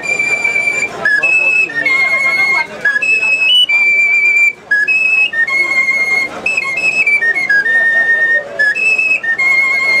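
A man whistling a tune through his clasped hands and fingers held at his lips. It is a string of clear, high held notes that step up and down in pitch, with short breaks between them.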